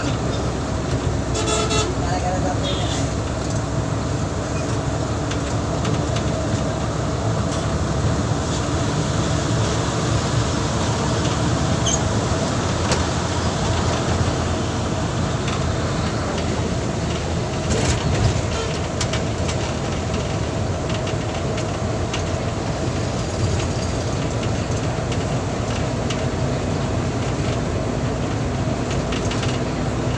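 Steady engine and road noise inside a BRTC bus cabin as it drives along a highway, with vehicle horns tooting now and then.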